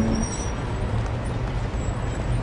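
Steady low rumble with a hiss from a running motor vehicle, as the tail of the last music note dies away in the first moment.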